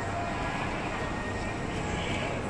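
Steady ambient noise of a busy indoor shopping mall: a constant low hum with faint, indistinct voices in the distance.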